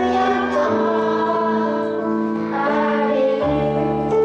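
A boy singing a Christmas song solo into a microphone, his high child's voice gliding between notes, over keyboard accompaniment with held chords that change twice.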